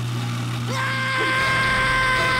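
A kitchen-sink garbage disposal motor running with a steady low hum. Less than a second in, a man's long, held shout starts over it.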